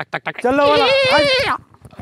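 A man's voice: a quick run of short laughing bursts, then a drawn-out vocal held for about a second with a strongly quavering, bleat-like pitch, cut off shortly before the end.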